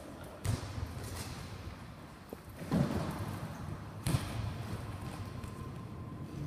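Three sharp thuds of a volleyball being struck and bouncing on the gym court: about half a second in, near the middle, and about four seconds in. Each is followed by a short echo of the hall.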